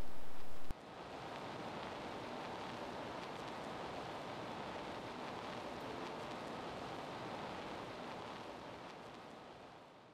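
Steady background hiss with no distinct events. It drops suddenly in level just under a second in, then holds steady and fades out over the last couple of seconds.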